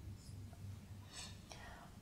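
Faint felt-tip marker sounds on a whiteboard: a short stroke near the start, then a longer, scratchier stroke about a second in that ends in a light tap.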